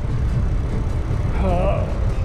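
A man's pained groan about three quarters of the way through, from hay-fever misery while cycling, over a steady low rumble of wind on the microphone as the bike rolls along.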